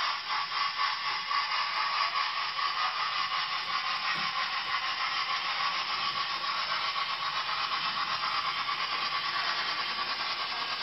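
Dapol OO gauge A4 model locomotive running along the track under DCC control, its motor and wheels making a steady rasping run noise with a faint whine.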